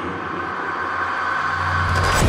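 Horror-trailer sound design: a sustained high tone and a low hum over a rumbling noise bed, slowly swelling in loudness and breaking into a louder hit at the very end.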